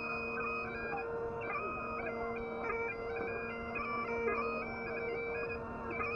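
Bagpipe playing a tune: a stepping chanter melody over the steady, unbroken hum of the drones.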